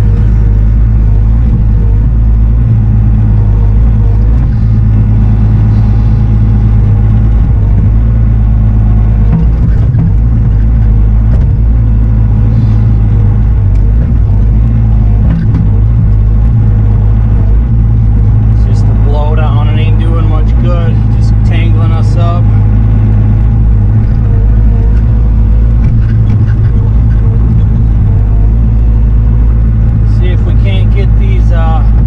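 Bobcat E42 mini excavator's diesel engine running steadily under load, heard from inside the operator's cab while the boom and bucket work.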